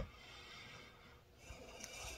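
Near silence: a single sharp click at the very start, then faint breathing as the pipe smoker lets out a breath between puffs.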